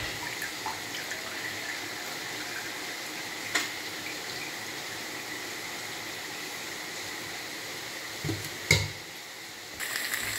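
Tomato sauce frying in a pan under a heap of spaghetti, a steady sizzling hiss. Two sharp knocks of the wooden spatula against the pan break it, one about three and a half seconds in and a louder one near the end.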